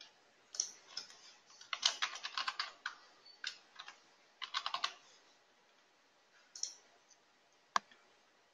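Computer keyboard typing: two quick runs of keystrokes with a few single key clicks between them, then one sharp mouse click near the end.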